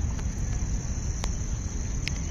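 Crickets chirring as one steady, high-pitched drone over a low rumble.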